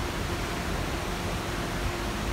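Hurricane-force wind and wind-driven rain blasting the microphone: a steady, loud rush of noise.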